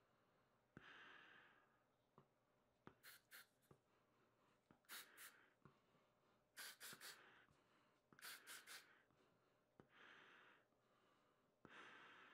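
Quiet breathing of a person wearing a gas mask, drawing air through its particulate filter: slow, about second-long breaths near the start and near the end, with short sharp hisses in quick groups of two or three in between.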